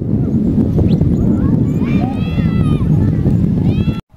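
Outdoor ambience dominated by a steady low rumble, typical of wind buffeting a camcorder microphone, with the indistinct voices of a crowd. About two seconds in a call rises and falls in pitch for under a second, and another begins just before the end.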